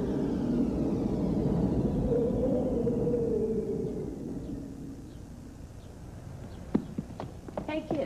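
A held, wavering vocal note at the end of a song fades out over the first few seconds. Then a few irregular footsteps click on a hard stage floor near the end.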